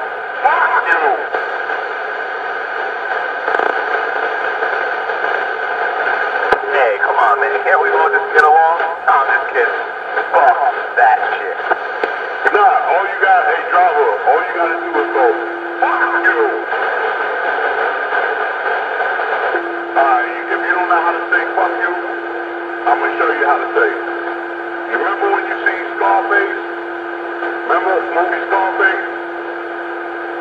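Muffled, thin-sounding voices talking continuously, as if heard through a small speaker, with a steady hum underneath. A steady low tone comes in briefly around the middle and again for the last third.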